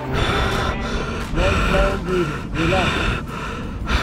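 A rock climber's hard, gasping breaths and several short strained voice sounds from effort while pulling up a crack, with a rough noise under them throughout.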